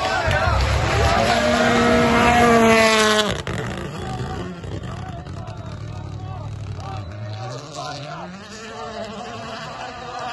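Rally car engine at full throttle passing spectators on a gravel stage: a loud, climbing engine note for about three seconds that drops abruptly, followed by a fainter engine that revs up again near the end. Spectators chatter throughout.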